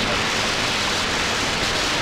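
CB radio receiver hiss: steady band noise from the speaker on an open channel after a call, with no readable station answering.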